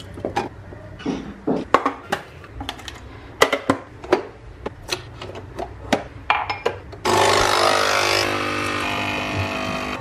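Capsule coffee machine being loaded, with light clicks and knocks as its lever is worked; about seven seconds in its pump starts with a loud steady buzz as it brews.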